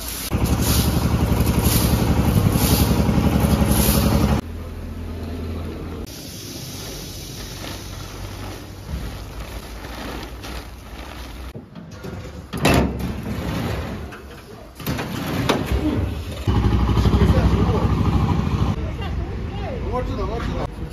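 An engine running loudly with a fast, even pulse. It cuts off abruptly about four seconds in and comes back for a couple of seconds near the end. In between there is quieter background noise with a single sharp knock midway.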